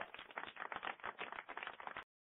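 Computer keyboard typing: a rapid, irregular run of light clicks.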